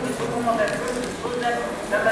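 Speech only: a person lecturing into a microphone.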